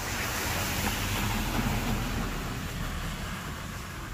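Steady rushing outdoor background noise with a low rumble underneath and no distinct events.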